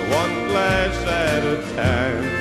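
Country music: the band plays on after the last sung line, a lead instrument sounding gliding notes over the steady accompaniment.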